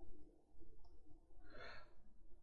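A quiet pause with a low steady hum and one soft breath near the end.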